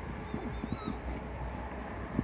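Silver foxes play-fighting, giving short high-pitched whining squeals in the first second, with soft scuffling thumps as they tussle.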